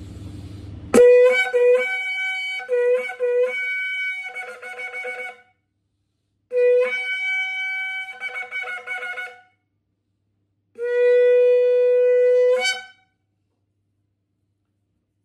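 Yemenite kudu horn shofar, fine-tuned to three tones, blown in three blasts. The first is a run of quick broken notes flicking between a lower and a higher pitch. The second steps up to the higher note and holds it, and the third is a long steady low note that flips up briefly at its very end.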